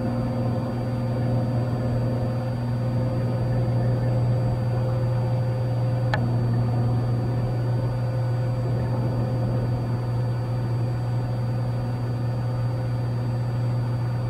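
Cessna 182's six-cylinder piston engine and propeller droning steadily in flight, a constant low hum with no change in pitch. A single brief click sounds about six seconds in.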